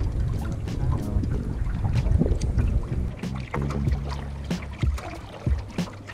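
Canoe being paddled: paddle strokes and water moving past the hull, with a low rumble of wind on the microphone. Music plays under it, with a few held low notes after the midpoint.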